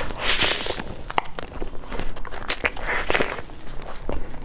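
Close-miked chewing of a soft taro-paste pastry: irregular moist mouth sounds with scattered sharp clicks.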